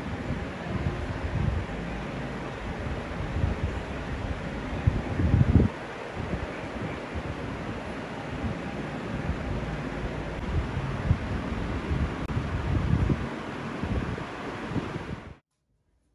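Steady rushing noise with gusty low rumbles, loudest about five seconds in, typical of wind buffeting the microphone; it cuts off suddenly near the end.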